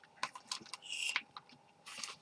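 Faint desk handling sounds: several light, separate clicks of computer keys, a short rustle about a second in, and headphones being handled and put on near the end.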